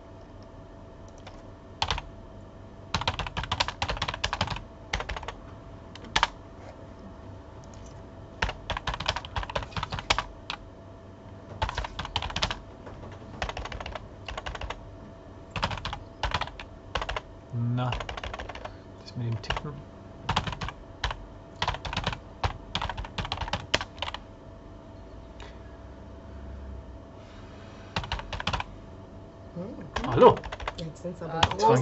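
Typing on a computer keyboard: bursts of rapid key clicks lasting a second or two, broken by short pauses.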